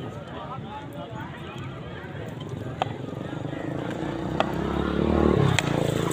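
Distant voices with a low engine rumble of a passing vehicle that swells toward the end, then a sharp crack of a cricket bat hitting the ball hard near the end, the strike that goes for six.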